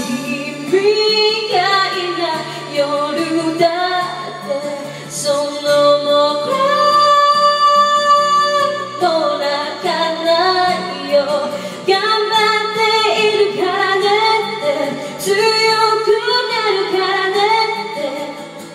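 A woman singing a Japanese pop ballad into a microphone over a backing track, holding one long note midway through.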